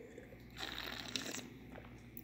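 A faint, airy sip of red wine drawn from a wine glass, a short slurp starting a little over half a second in and lasting under a second.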